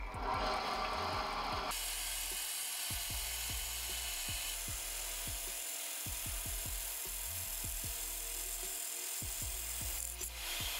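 Bandsaw running and cutting through a block of cured epoxy resin and wood, a steady cutting noise that grows hissier about two seconds in as the blade bites.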